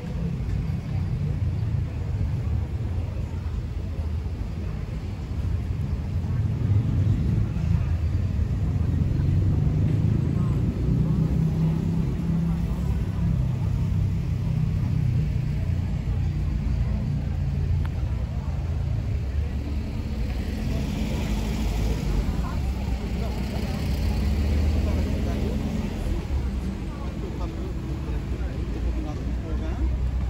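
Town street ambience: car traffic rumbling on the street beside a pedestrian square, swelling and fading as vehicles pass, with indistinct voices of passers-by.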